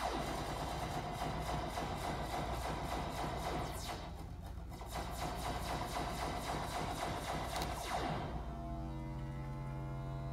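Eurorack modular synthesizer oscillator modulated by an Intellijel Quadrax function generator in burst mode: a rapid train of clicky pulses over a buzzy drone, with falling pitch sweeps. About eight seconds in it settles into a steady, held drone.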